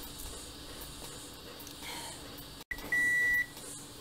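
Konica Minolta bizhub C353 copier's control panel giving one steady high beep, about half a second long, a little under three seconds in, as it flags originals left on the scanner glass. Before it, only a faint steady hum.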